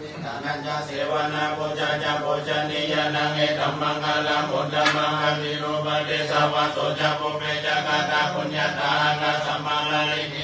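Pali Buddhist verses chanted in unison by several voices: a continuous recitation on a nearly steady pitch, with syllables pulsing evenly over a low held tone.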